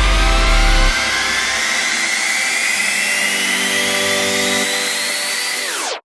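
Electronic dance track's build-up: a climbing synth sweep and a rising noise wash over held chords, with the deep bass dropping out about a second in. Near the end the sweep bends down and the sound cuts off suddenly, ahead of the drop.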